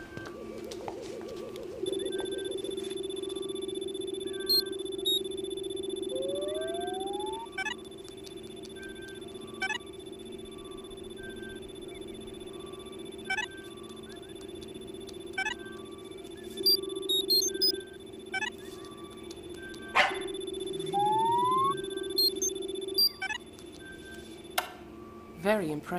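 Electronic synth score: a steady drone under held high tones, with short rising chirps about every two seconds, a couple of rising glides, and scattered bleeps and clicks.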